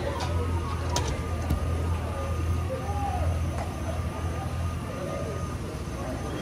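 A vehicle engine idling with a steady low hum, with distant talking over it and a couple of sharp clicks about a second in.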